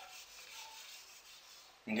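A whiteboard being wiped clean by hand: faint, repeated back-and-forth rubbing strokes across the board's surface.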